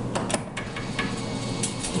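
Claw machine's mechanism running: a steady low hum broken by several sharp mechanical clicks, the loudest about a third of a second in.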